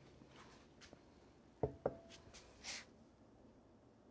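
A full glass measuring bowl set down on a wooden cutting board: two knocks a quarter of a second apart, then a brief soft rustle in a quiet kitchen.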